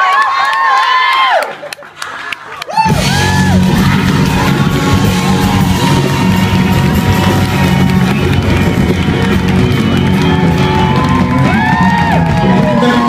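Live audience cheering and whooping, dropping to a brief lull with a few sharp hits about two seconds in; then, about three seconds in, the full band comes back in with heavy bass and drums, the crowd still whooping over the music.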